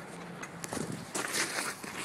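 A person's footsteps: a few irregular steps with some scuffing.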